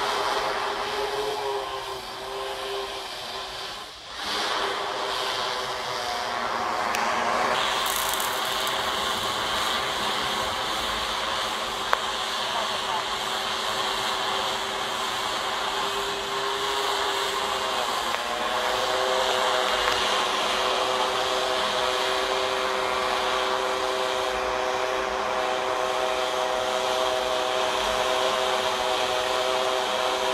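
Multirotor drone's propellers humming as it hovers, a cluster of steady tones that shift in pitch as the motors change speed, over a hiss.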